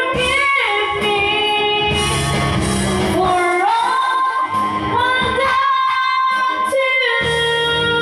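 A woman singing karaoke into a microphone over an instrumental backing track, sliding between notes and holding one long note through the middle.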